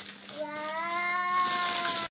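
A toddler's long, drawn-out vocal exclamation, a single held "waaah" at a steady pitch starting about half a second in, cut off abruptly at the end.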